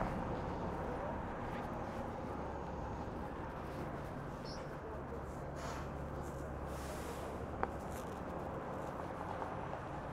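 Steady city street background: a low hum of traffic and idling vehicles, a little stronger in the middle, with one sharp click near the end.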